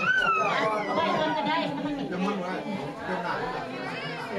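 Overlapping voices of a group of people talking at once, with no single clear speaker.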